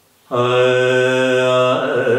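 A man singing unaccompanied in Carnatic style, in raga Abhogi: a long held low note that starts about a third of a second in, then a step to another note near the end, moving into wavering ornaments.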